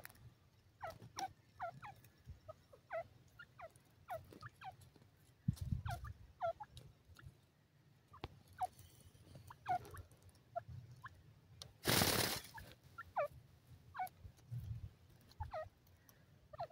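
Grey francolin giving short, falling chirps, repeated irregularly about once a second while it feeds. A brief loud burst of noise breaks in about three-quarters of the way through.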